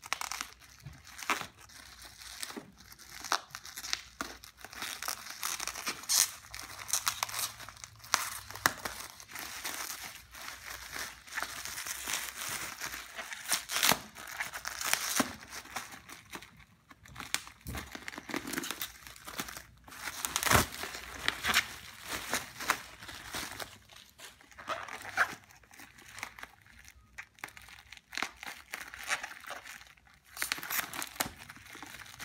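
Plastic bubble wrap around a parcel crinkling and rustling as it is handled and unwrapped by hand: an uneven stream of sharp crackles with a couple of short pauses.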